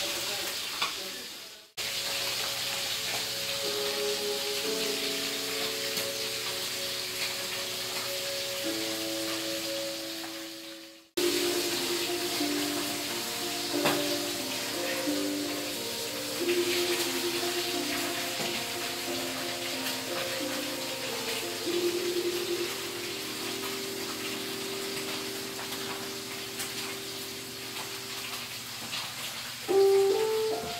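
Fish frying in oil in a wok, a steady sizzle, with background music over it. The sound cuts out abruptly about two seconds in and again about eleven seconds in.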